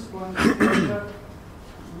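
A person clears their throat with one short cough about half a second in.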